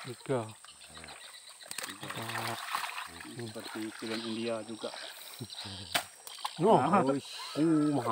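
Men's voices talking and calling out in short bursts, with a steady high-pitched hum behind.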